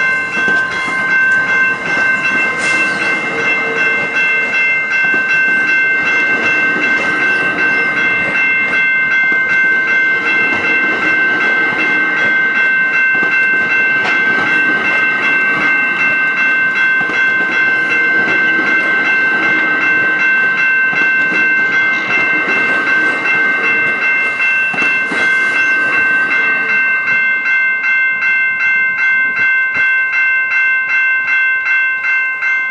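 Level-crossing warning bell ringing steadily as bi-level commuter coaches roll past with wheel clatter. The rumble of the passing cars thins out near the end, leaving the bell's regular strokes clearer.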